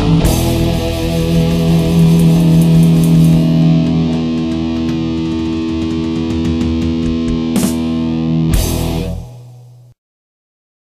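Heavy metal band's closing chord: distorted electric guitar struck hard and left ringing. Two more sharp hits come near the end, then the chord dies away to silence in the last second.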